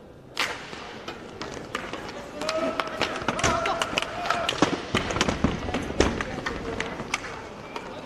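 Inline hockey play: a sharp stick clack at the faceoff, then a rapid run of clacks and knocks from sticks hitting each other and the puck, with skate wheels on the rink floor. Players shout, with one long held call partway through.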